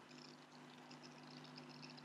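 Near silence: a faint, steady low hum of room tone with no speech.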